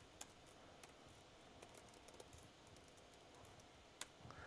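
Faint typing on a computer keyboard: scattered soft, irregular key clicks over near-silent room tone.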